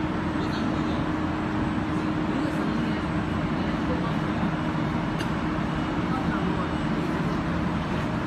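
Insulation foam sheet cutting machine running: a steady mechanical noise with a constant hum.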